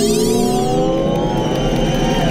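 Electronic synthesizer music: a high sweep glides up in pitch and back down shortly after the start, over sustained tones that sink slowly in pitch.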